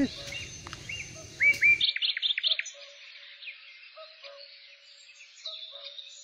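Birds chirping: a quick run of short, rising, hooked chirps about a second and a half in is the loudest part, with fainter scattered calls around it. A low background rumble cuts off about two seconds in.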